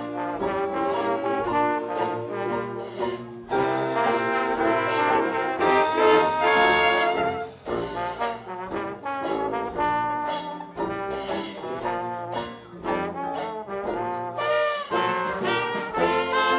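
Early big-band jazz orchestra playing an instrumental passage: trumpets, trombone and saxophones together in full ensemble over a steady beat from the rhythm section.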